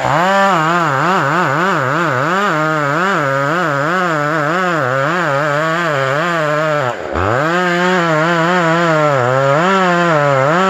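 Chainsaw cutting into the trunk of a white fir, its engine speed wavering rapidly up and down under load in the cut. About seven seconds in, the revs drop sharply for a moment, then climb back as the saw goes on cutting.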